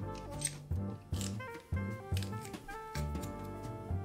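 Background music with a steady beat, over which a metal garlic press squeezes a garlic clove: two short rasps in the first second and a half.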